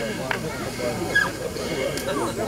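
Indistinct murmur of several people's voices at a moderate level, with no guitar playing.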